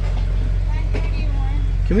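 BMW car engine idling, a steady low hum heard from inside the cabin, with faint voices partway through.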